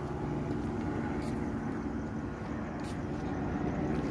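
Steady low mechanical hum holding an even pitch, with a couple of faint clicks.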